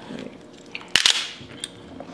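Crab shell snapped apart by hand: one sharp crack about halfway through, with a brief crackle after it and a few lighter clicks of shell around it.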